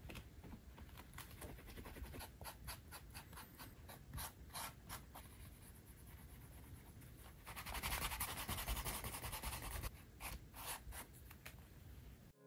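Wooden edge burnisher rubbing back and forth along a leather edge to burnish it: quick short strokes, about three or four a second, with a faster, louder spell of continuous rubbing a little past the middle.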